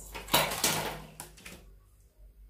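Drafting tools handled on pattern paper: a ruler laid and slid across the paper, a rustling scrape of about a second ending in a couple of light knocks.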